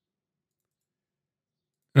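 Dead silence, with no room tone, and then a man's voice begins speaking at the very end.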